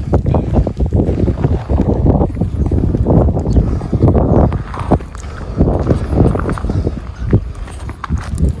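Wind buffeting an outdoor handheld camera microphone, a heavy, uneven rumble, with a scatter of short knocks from footsteps on gravel.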